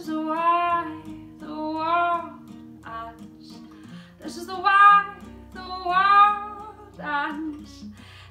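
A woman singing to her own acoustic guitar: sung phrases of long, held notes, with a gap about three to four seconds in, over a steady run of plucked guitar notes.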